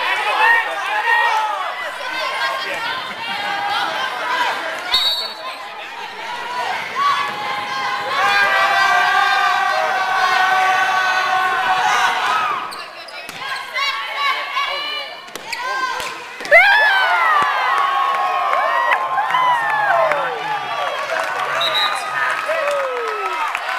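Volleyball players and spectators shouting and calling out in a reverberant gym, some calls drawn out, with a few sharp thuds of the ball being struck. A sudden burst of loud shouts comes about three-quarters of the way through.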